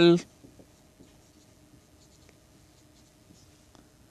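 Marker pen writing on a whiteboard: faint scratches and light taps of the felt tip as letters are formed, over a faint steady hum.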